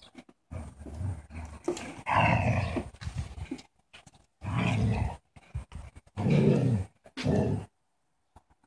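Dalmatian puppies growling while they play, in several short bursts of under a second each, the sound breaking off abruptly between them.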